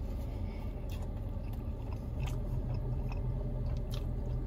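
A person chewing a mouthful of a soft, cheesy folded pizza-dough sandwich, with scattered wet mouth clicks.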